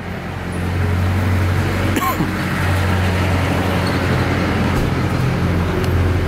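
Street traffic noise with a steady, low mechanical hum, like an engine running nearby.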